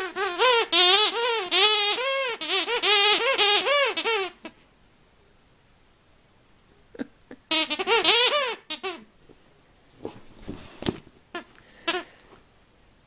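Squeaker inside a fabric dog frisbee being chewed by a puppy: a fast run of squeaks, each rising and falling in pitch, about four a second for some four seconds, then a shorter run about halfway through. Faint clicks and rustles of chewing near the end.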